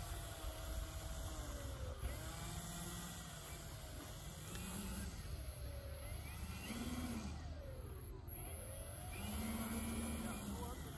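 The twin propellers and motors of a radio-controlled OV-10 Bronco scale model whir as it taxis, the pitch rising and falling several times with the throttle.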